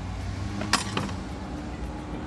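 A sharp metallic clink about three-quarters of a second in, then a fainter one just after, as a metal utensil strikes a plate while meat is pulled off kebab skewers onto rice. Under it runs a steady low hum of road traffic.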